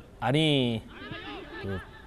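Speech only: a football commentator says a short phrase near the start, followed by quieter talk.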